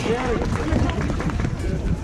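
Wind buffeting an outdoor microphone as a low, uneven rumble, with a man's voice over a public-address system faintly in it.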